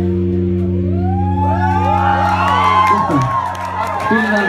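A live rock band's held final chord ringing as one steady low note, stopping about three seconds in. Over it the audience cheers, whoops and claps, the cheering starting about a second in.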